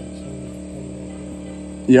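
Portable generator running steadily, a constant even hum.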